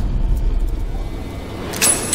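Trailer sound effects: a low rumble, then a sharp hit near the end with a high metallic ring after it.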